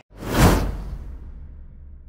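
A whoosh transition sound effect that swells to a peak about half a second in, then fades slowly over a low rumbling tail.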